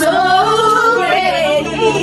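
A woman's singing voice over music, holding long notes that waver and glide in pitch.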